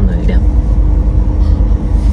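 Wind buffeting the microphone: a loud low rumble that wavers in level. A voice trails off in the first half-second.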